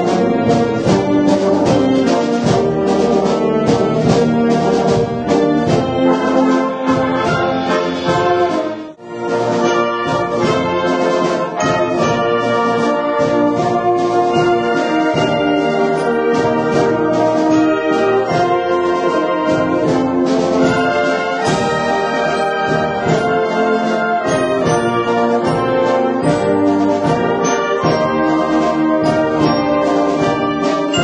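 Traditional Tyrolean wind band (Bergknappenmusik) playing a concert piece, brass and clarinets together with trombones and trumpets to the fore. The music dips sharply for a moment about nine seconds in, then carries on.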